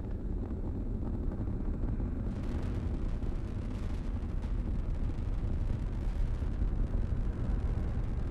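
Rumbling, crackling roar of the Atlas V rocket's RD-180 first-stage engine and four solid rocket boosters during ascent. It grows louder and brighter about two seconds in.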